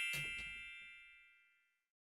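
The ringing tail of a bright bell-like chime sound effect, several clear high tones fading away and gone about a second in.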